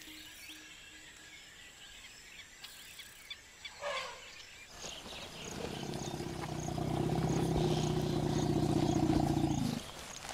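Asian elephant giving a long, low rumble that swells over about four seconds and cuts off sharply near the end. Before it there is quiet forest ambience, with a faint high chirp repeating about twice a second.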